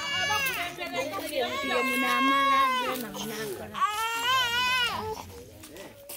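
A person crying out in long, high-pitched wails, three in a row, the last one wavering. Low voices talk underneath.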